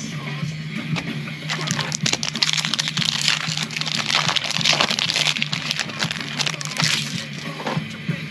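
Foil wrapper of a Pokémon booster pack crinkling and tearing as it is opened, a dense crackle that swells about a second and a half in and dies away near the end, over background music.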